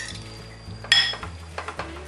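A spoon stirring batter in a glass mixing bowl strikes the glass once about a second in, giving a sharp clink that rings briefly. Soft background music plays underneath.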